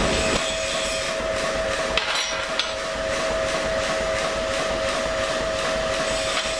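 Power hammer running with an even rhythm of strokes, two or three a second, over a steady whine from the machine.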